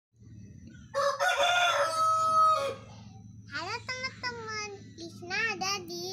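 A rooster crowing once, about a second in, its call ending in a long held note.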